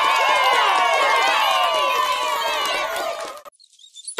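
A group of children cheering and shouting together, many voices at once, cutting off suddenly about three and a half seconds in.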